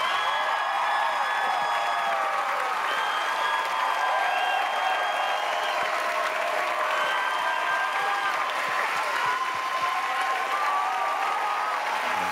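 Studio audience applauding and cheering at the end of an a cappella song, with steady clapping and scattered cheers and whoops above it.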